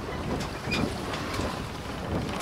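Steady noise of a harbour ferry under way, with wind on the microphone.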